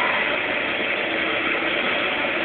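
Live rock band playing loud, heard as a dense, steady wash of noise with no clear melody or voice standing out.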